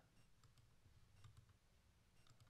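Near silence with several faint clicks from a presentation pointer being pressed as the speaker tries, without success, to advance the slides.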